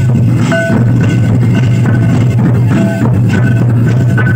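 Santali folk dance music: large hide-headed drums beaten with sticks in a steady rhythm, with short repeated higher notes over a constant low drone.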